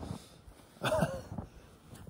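A man's short wordless vocal sound about a second in, amid otherwise quiet outdoor air.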